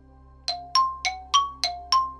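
A bell-like chime sound effect: a quick run of six struck notes, about three a second, alternating between a lower and a higher pitch, starting about half a second in.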